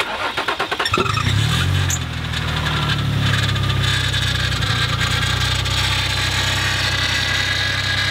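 Nissan 350Z's 3.5-litre V6 cranked by the starter, catching about a second in, flaring briefly, then settling into a steady idle. It is not running right, with a noise from the power steering pump, which is out of fluid; the poor idle comes from a large air leak in the aftermarket cold air intake past the mass airflow sensor.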